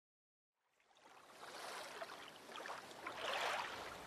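Sea waves washing, fading in from silence about a second in and swelling near the end.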